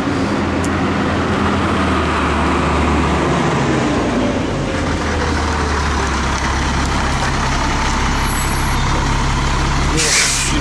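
Fire truck engine running steadily at idle: a low hum with an even hiss over it.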